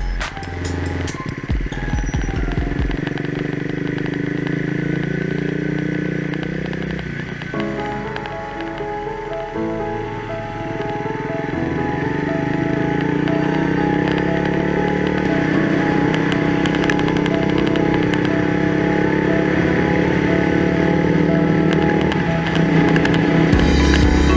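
Background music with a melody that moves from note to note, with a motorcycle engine running beneath it.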